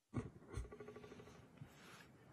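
Two soft bumps close to a desk microphone, then faint rustling and room noise.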